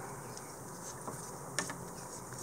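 Quiet steady room hiss with one soft tap about a second and a half in, as gloved hands set a rolled sheet of polymer clay down on the work mat.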